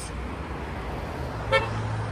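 Road traffic noise with a short car horn toot about one and a half seconds in, followed by a steady low engine hum.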